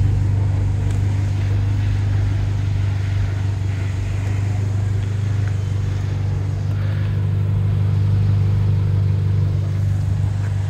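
Abarth 595 Turismo's turbocharged four-cylinder idling as a steady low drone through an exhaust that is much louder than standard.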